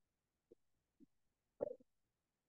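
Near silence, broken by two faint, very short blips and a brief low sound near the end.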